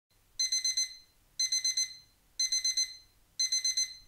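Digital alarm clock beeping: four bursts of about four quick high-pitched beeps each, one burst a second.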